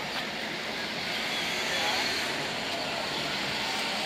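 Steady outdoor background noise with distant voices murmuring, a little louder about halfway through.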